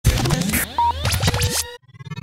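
Electronic intro sting: a dense burst of swooping, scratch-like pitch sweeps and clicks over a bass note, with a short beep under a second in, stopping abruptly just before the end.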